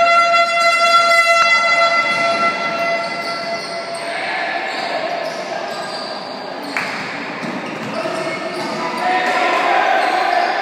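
Basketball game in an echoing sports hall: a steady horn-like tone sounds for about three seconds at the start. Then come voices shouting and the ball bouncing on the court.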